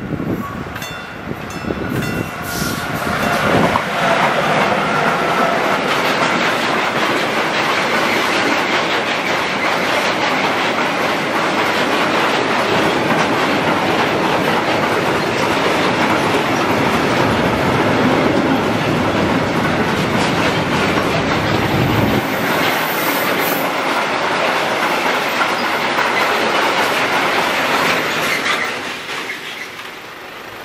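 Electric-hauled freight train of hopper wagons passing close by: loud, steady rolling noise of steel wheels on the rails, building up over the first few seconds and fading away near the end.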